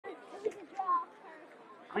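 Faint voices talking at a distance, with no other sound standing out.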